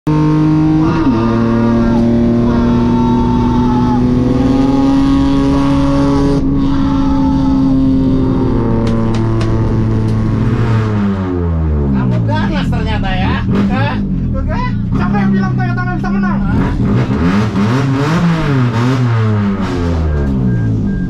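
In-cabin sound of a Toyota Yaris touring race car's engine at speed: held at fairly steady, slowly climbing revs for the first half, then revs rising and falling sharply again and again.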